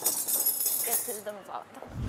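Light clinking of dishes, glasses and cutlery as a dining table is set, thickest in the first second, with faint voices underneath.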